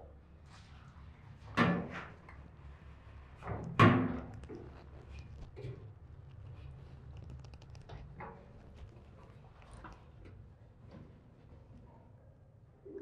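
Knocks and thumps of a person climbing down a steel ladder through a round deck scuttle. Two louder thumps come about one and a half and four seconds in, then lighter clanks and scuffs, over a steady low hum.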